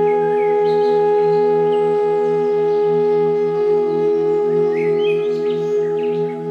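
Ambient meditation music: a held, singing-bowl-like drone with a pulsing low tone. Birds chirp briefly over it a few times, most near the end.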